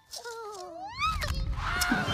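A cartoon squirrel's wailing cry that slides down in pitch, then swoops up and back down. About a second in, a loud low rumble with music takes over.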